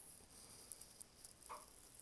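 Near silence: faint room tone, with one brief faint sound about one and a half seconds in.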